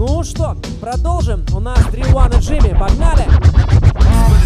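DJ scratching a record over a loud hip-hop breakbeat: quick rising-and-falling scratch sweeps fill the first two seconds, then the beat carries on strongly.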